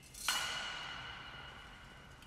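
A single sharp metallic strike about a quarter-second in, ringing on with a clear two-note tone that fades slowly.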